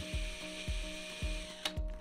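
A drill spinning an egg-beater mixer wrapped in window screen, whipping shampoo solution into foam in a plastic pail. It makes a faint steady whir that stops about one and a half seconds in. Background music with a steady beat plays throughout.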